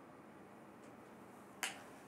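Faint room hiss, broken about one and a half seconds in by a single sharp click.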